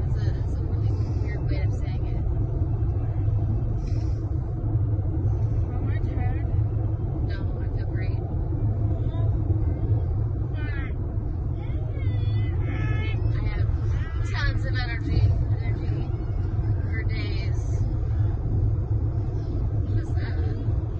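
Steady low rumble of road and engine noise heard inside a car's cabin at highway speed.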